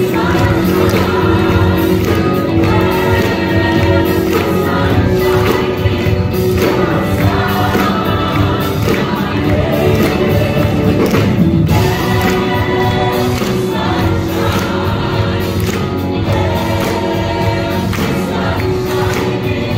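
Stage musical cast singing together in full chorus over a live rock band, with tambourine in the mix.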